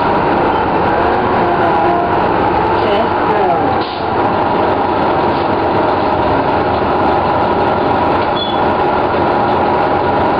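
1997 Orion V transit bus with its Detroit Diesel Series 50 diesel engine running, a steady dense noise, with a pitch that falls about three seconds in and a short drop in loudness just before four seconds.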